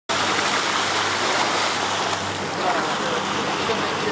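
Rushing, splashing water churned up alongside a moving boat, steady throughout, with a low steady hum from the boat's engine underneath.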